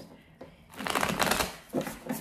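A deck of tarot cards being shuffled by hand: a dense run of card flutter lasting under a second, about a second in, then a short tap as the cards are knocked together.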